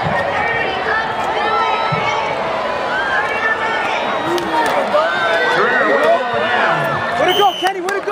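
Football stadium crowd yelling and cheering during a running play, many voices overlapping, growing louder about five seconds in.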